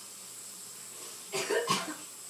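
A person coughing twice in quick succession, about a second and a half in, choking on dry ground cinnamon.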